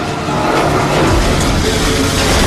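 Film battle soundtrack: a loud, dense rushing noise over a low rumble, mixed with faint music.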